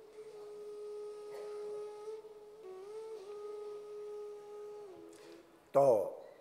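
A soft single-line melody of long held notes that step up and down in pitch, with a brief bend up and back about halfway through. A loud spoken word cuts in near the end.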